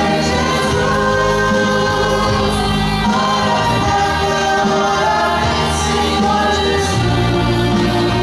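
Gospel worship group singing in several voices with a woman leading, over electric and acoustic guitars and bass. The bass line moves to new notes about three seconds in and again near the end.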